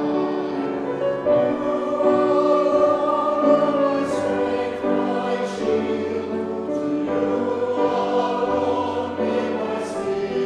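Mixed church choir of men and women singing in parts, several voices sustaining notes together without a pause.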